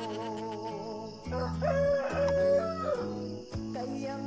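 A rooster crowing once, starting about a second in and lasting around two seconds, over background music.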